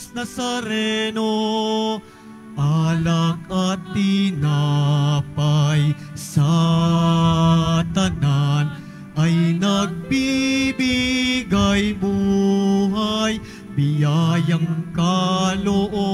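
Offertory hymn sung at Mass: a singing voice with vibrato on long held notes, phrase after phrase with short breaths between, over steady pitched accompaniment.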